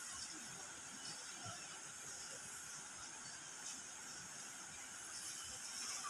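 Faint, steady rushing hiss of a shallow river running over rocks.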